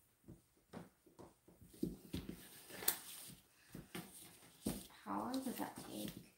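Wooden stir stick scraping and knocking against the sides and bottom of a plastic mixing cup as two-part epoxy resin is stirred: a run of light, irregular clicks and scrapes. A voice speaks briefly near the end.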